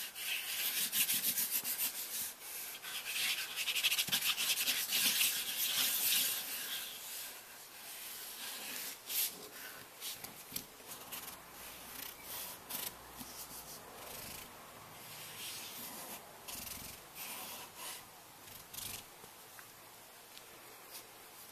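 Dry rubbing and scratching on drawing paper, many short scraping strokes, louder over the first six seconds or so and softer after.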